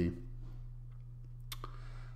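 A single sharp click about one and a half seconds in, over a steady low electrical hum.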